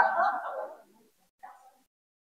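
A short burst of a person's voice lasting under a second, then a brief faint sound about a second and a half in, followed by dead silence.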